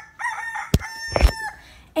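A rooster crowing in one long held call, an edited-in cue marking the jump to the next morning, with two sharp clicks during it.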